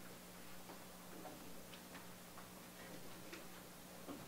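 Faint, irregularly spaced light ticks and rustles of lecture papers being handled at a lectern, over a steady low hum.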